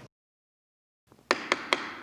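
Dead silence for about a second, then a wooden gavel rapped three times in quick succession on the council bench, calling a meeting to order.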